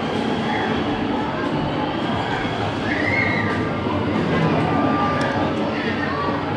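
Steady din of a busy arcade: indistinct voices over continuous machine noise, with faint electronic tones.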